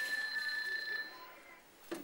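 Telephone ringing: one steady, high-pitched ring lasting about a second.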